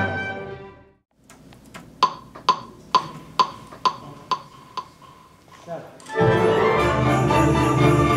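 A metronome click track counting in at a steady beat, a little over two sharp pitched clicks a second, after a brass passage fades out. About six seconds in the full orchestra comes in loudly on the beat.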